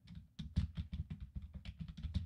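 Typing on a computer keyboard: a fast, uneven run of key clicks that starts about half a second in.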